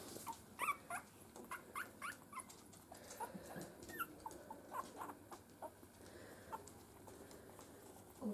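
Newborn miniature schnauzer puppies squeaking: short, faint high squeaks, a few a second, thinning out near the end.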